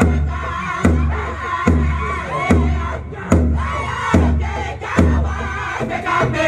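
A drum beaten at an even pace, a little over one stroke a second, each stroke followed by a long low boom, under a group of voices singing.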